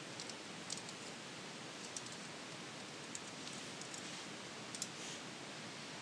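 Scattered faint clicks of a computer keyboard and mouse, a handful of separate keystrokes over a steady background hiss.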